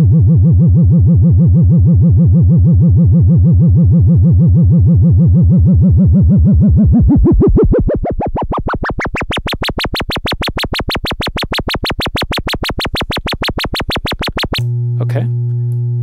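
Doepfer A111-1 VCO sine tone, through an A120 low-pass filter, wobbling in pitch: vibrato from an LFO sine wave at its exponential FM input. About seven seconds in, the modulation is turned up and the vibrato widens into deep, fast pitch sweeps reaching high. About a second and a half before the end the sweeps cut off, leaving a steady low tone.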